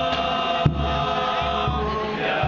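A group of men chanting selawat together in unison, led by one amplified voice. A single sharp hit stands out about two-thirds of a second in, likely a kompang frame drum.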